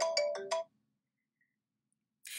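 A phone ringtone playing a short electronic melody of steady stepped notes, which cuts off suddenly after about half a second.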